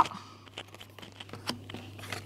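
Stiff cardboard game cards being picked up from their piles and turned over onto a wooden table: scattered light clicks, taps and slides.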